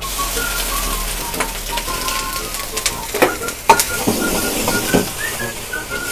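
Bean sprouts sizzling in hot oil and garlic in an iron wok over a gas flame: a steady hiss that starts suddenly as they go in. Several sharp metal clanks of the wok and ladle come in the second half, the loudest about three to four seconds in.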